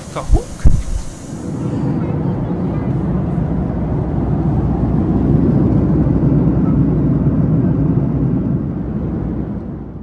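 Cabin noise of a Boeing 737 MAX 8 in cruise: a steady, low rushing drone of engine and airflow noise inside the economy cabin. It builds up over the first couple of seconds and eases off near the end. A few low thumps come in the first second.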